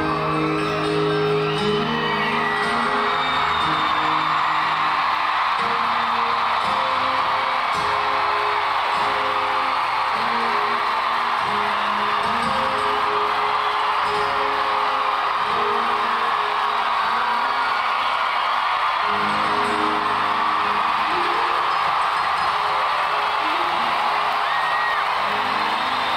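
Large arena crowd cheering and whooping loudly over acoustic guitars, one a double-neck, playing the closing chords of a ballad. The guitar notes thin out midway and come back near the end.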